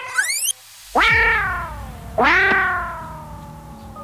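Two long, meow-like calls, each rising briefly and then sliding slowly down in pitch, the second about a second after the first. A quick rising sweep comes before them.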